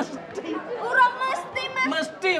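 Only speech: people talking over each other, with a higher-pitched voice about a second in.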